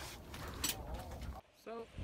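Faint talking over outdoor background noise. It breaks off in a brief dropout about one and a half seconds in, then a single spoken word.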